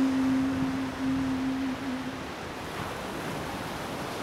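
Surf washing up a sandy beach, a steady rush of water, with a single low note held over it for the first two seconds or so before it fades away.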